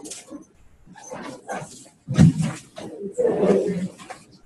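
Indistinct voices of people talking near the microphone, with a loud burst of voice about two seconds in and a longer loud stretch near the end.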